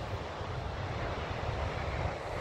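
Wind buffeting the microphone: a steady rushing noise with uneven low rumbling.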